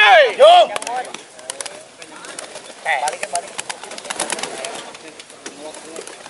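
Pigeon handlers give a couple of loud calls that rise and fall in pitch at the start, then pigeon wings clatter in quick sharp claps as the birds held aloft flap, with another short call about three seconds in.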